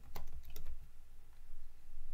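Typing on a computer keyboard: quick, irregular keystroke clicks.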